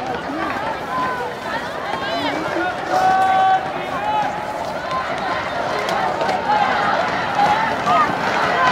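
Voices of spectators and players at an outdoor rugby match: overlapping talk and calls, with one voice holding a long shouted note about three seconds in.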